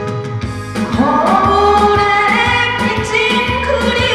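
A woman sings a Korean trot song into a microphone over a backing track with a steady drum beat. Her voice enters about a second in, after a short instrumental bar, with long held notes and vibrato.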